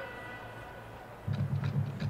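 Marching band beginning its show. After a moment of quiet in the big hall, the band comes in about a second in with a loud, fast, low rhythmic pulse, with sharp percussion strokes over it.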